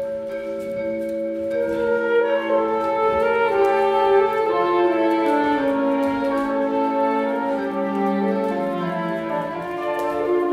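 Live chamber ensemble of flute, saxophones and cello playing long held notes in a slow, layered chord. More parts enter about a second and a half in, and the lower lines step downward toward the end.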